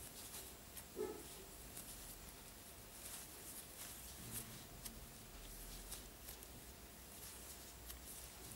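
Faint rustling and soft ticks of yarn and a crochet hook being worked by hand as double crochet stitches are made, with one slightly louder brief sound about a second in.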